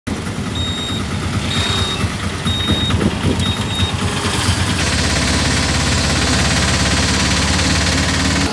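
Auto-rickshaw engine running on the move, with a short high electronic beep repeating about once a second for the first four seconds. About five seconds in it gives way to a steadier noise with a low hum.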